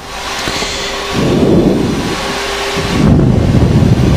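Steady rushing noise on the flight deck of a Boeing 737-800 in flight, with low rumbling swells about a second in and again near the end.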